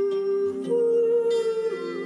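Slow harp music: plucked notes ringing over long held tones, with a new held note entering less than a second in.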